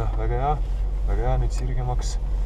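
Estonian speech, calm instructions to slow down, over the steady low rumble of a car cabin as the car moves slowly.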